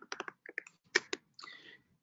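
Typing on a computer keyboard: a quick run of about ten keystrokes over the first second or so, entering a web address.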